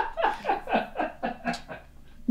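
A person laughing: a run of short 'ha' bursts, each falling in pitch, about five a second, dying away near the end.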